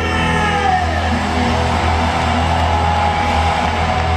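Live rock band playing amplified in a large arena hall, heard from within the crowd. A long held note glides down early on and then holds over a steady, heavy bass.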